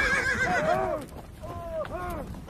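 Horses whinnying twice: a long wavering call at the start and a shorter one about a second and a half in, over a low rumbling noise.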